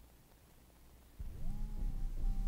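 Low hiss and hum on a studio tape. About a second in, a louder hum starts suddenly, with sustained low tones and one tone that slides up in pitch and then holds steady.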